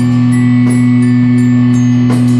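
Band jam music: one loud, steady low note held unbroken, with a few light percussion taps over it.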